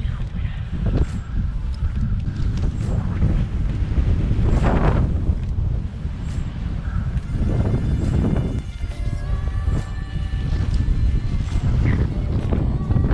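Wind buffeting the camera microphone in a steady low rumble, with several brief rustles and knocks of rope and climbing gear being handled.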